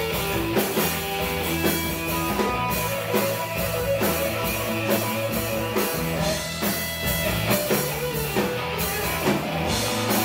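Live rock band playing loudly: electric guitar lines over bass and drum kit, with a steady beat.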